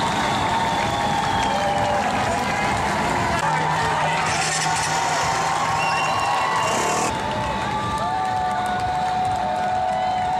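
Street crowd cheering a passing parade group: a steady roar of many voices with long held whoops and shouts rising over it.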